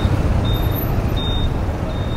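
Traffic noise on a busy city street, motorbikes and a truck passing, as a steady rumble. A faint high beep repeats about every 0.7 s.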